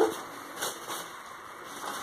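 Crepe paper rustling softly as it is gathered and fluffed by hand into a large paper flower.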